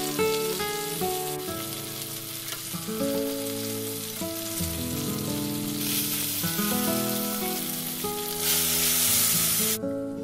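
Chicken skewers sizzling in a hot ridged grill pan. The sizzle swells twice in the second half and cuts off suddenly near the end, under a gentle melody of background music.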